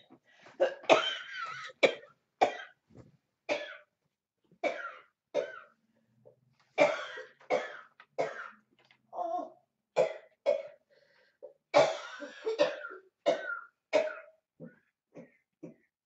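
A woman coughing hard in repeated fits, hacking as if to bring something up from her throat. The loudest bouts come about a second in, around the middle and about three quarters of the way through, with weaker short coughs near the end.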